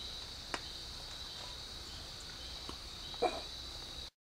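Steady, high-pitched background chirring of insects such as crickets, with a faint click about half a second in and a brief, louder sound a little past three seconds.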